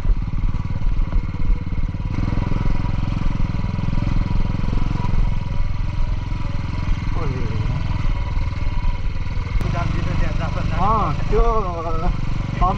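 Motorcycle engine running steadily at low speed while the bike rides over a rough dirt track, a dense even pulsing rumble throughout.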